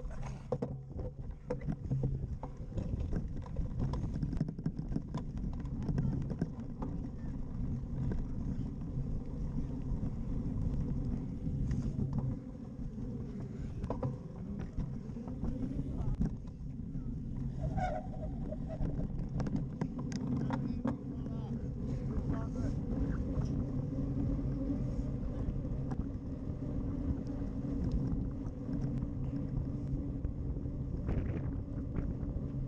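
Wind buffeting the microphone of a rider-mounted camera on a cyclocross bike, with a steady rumble and frequent rattles and knocks from the bike jolting over rough grass, then rolling onto brick paving near the end.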